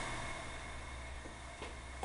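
Quiet room tone with a steady low hum and a faint click near the end.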